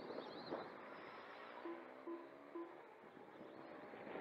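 Small electric motors of RC motorcycles whining faintly on the track, with three short electronic beeps about half a second apart in the middle.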